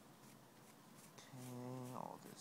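Near silence, then a low, steady buzz begins about two-thirds of the way in, from a flying insect close to the microphone.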